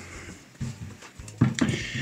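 Cloth tea towel rustling as it is pulled off a loaf of bread on a wooden board, followed near the end by a brief bit of a man's voice.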